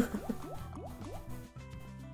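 Online slot machine game audio: a steady low music backing with a run of short rising blips, about five in the first second, as the reels spin and settle.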